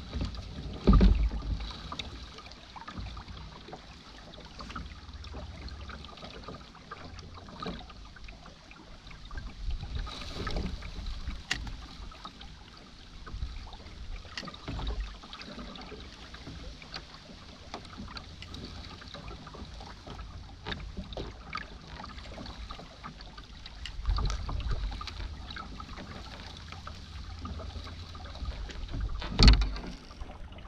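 Low rumble of wind gusting on the microphone, with scattered light knocks and rustles as the boat's bow rests against dry reeds. A louder knock comes about a second in and another just before the end.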